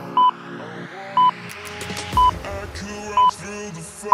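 Workout interval timer counting down: four short electronic beeps, one a second, marking the last seconds of a work interval. Background electronic music runs under them, with a rising sweep building from about halfway through.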